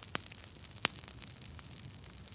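Campfire crackling as a paper book burns in it: a steady hiss with sharp crackles, one just after the start and a louder one a little before the middle.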